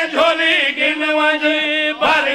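A man's voice chanting a line of Urdu devotional verse, holding one long note with a wavering, ornamented line above it.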